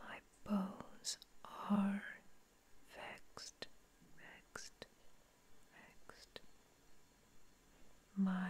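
Slow, close whispered speech, drawn-out words with pauses between them, and small sharp clicks between the words.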